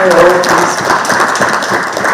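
Audience clapping, coming in suddenly and loud and carrying on, with a voice over it near the start.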